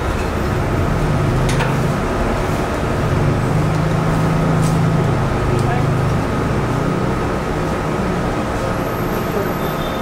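Steady machine noise: a low hum with a thin, constant high whine over it and no breaks.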